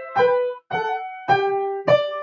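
Four single piano notes played slowly, about one every half second, each struck sharply and left to ring before the next.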